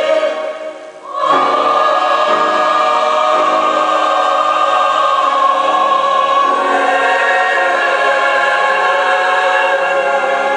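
Mixed choir of men and women singing long-held chords. The singing drops away briefly about a second in, then comes back on a new sustained chord that shifts to another chord around the middle.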